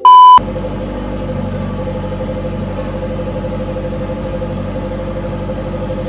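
A short, very loud single-pitched beep, then an engine idling steadily with an even, slightly pulsing note.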